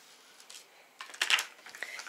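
Plastic toy pieces clicking and rattling lightly as they are handled on a child's play table, a few quick clicks about a second in after a quiet start.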